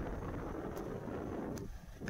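A motorcycle riding slowly along a rough dirt road, heard as a low rumble mixed with wind buffeting the microphone, easing off briefly near the end.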